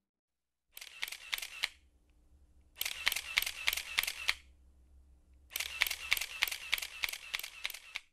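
SLR camera shutter firing in continuous bursts: three runs of crisp clicks at about three a second, each run longer than the one before.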